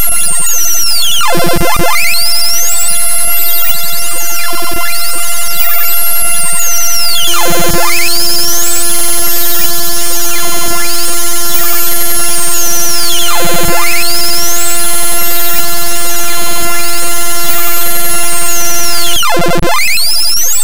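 Bytebeat "one-line symphony": harsh, loud 8-bit digital music computed sample by sample from a one-line integer formula running in ChucK. Dense buzzing tones with a swooping pitch sweep that falls and rises again about every six seconds; a steady drone tone joins about seven seconds in and cuts off about a second before the end.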